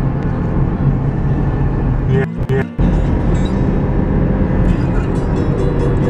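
Steady in-cabin road and engine noise of a car at highway speed, a low rumble that drops out briefly a little over two seconds in.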